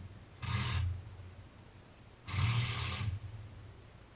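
Two scraping rubs, wood on wood, as the wooden hull of a Caledonia Yawl shifts against its wooden cradle while being turned: a short one about half a second in and a longer one a little past the halfway point.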